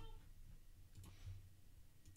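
Near silence with a low hum, broken by a single faint click about halfway through from working at the computer.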